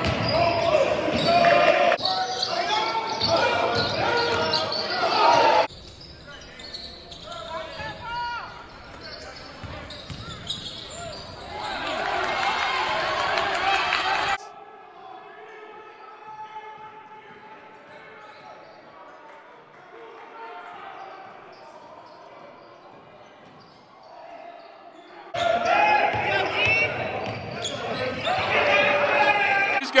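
Basketball game sound in a gym: a ball dribbling on the hardwood court amid voices echoing in the hall, in a run of separately cut clips. It drops much quieter for a stretch in the middle.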